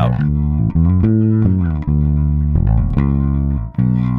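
Solo bass guitar playing a line of held notes, several changes of note, with a brief drop just before the end. This is the recorded bass with Melodyne's spectral shaping bypassed, its unprocessed tone.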